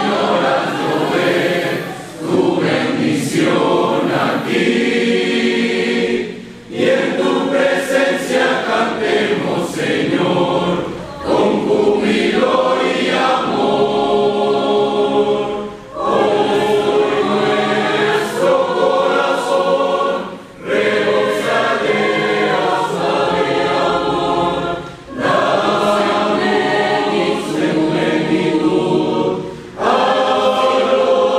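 Mixed youth choir of young men and women singing a hymn together, in phrases a few seconds long with short breaks between them.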